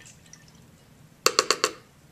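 Faint movement of stirred water, then a little over a second in, four quick taps of a hard object in a row, each ringing briefly.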